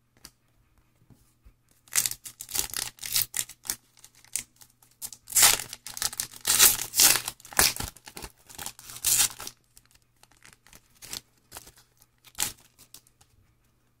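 Foil trading-card pack wrapper being torn open and crinkled in the hand, a run of crackling rustles lasting several seconds that thins out to a few scattered rustles near the end.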